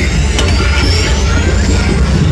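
Loud dance music with heavy bass, a synth sweep rising steadily in pitch across it.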